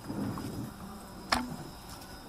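Low background murmur, then one sharp click about a second and a half in.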